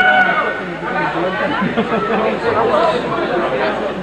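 Many voices talking at once: a steady crowd chatter of overlapping speech with no single clear voice.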